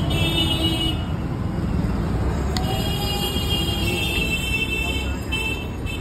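Busy street traffic: a steady engine and road rumble with high-pitched vehicle horns tooting near the start and again for much of the second half, and voices in the background.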